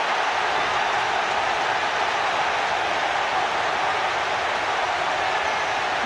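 A large stadium crowd cheering a goal: a dense, steady wash of crowd noise with no single voice standing out.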